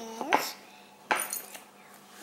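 Wooden puzzle pieces knocking against a wooden puzzle board as a toddler fits them in: two sharp clacks less than a second apart, with a short child's vocal sound at the start.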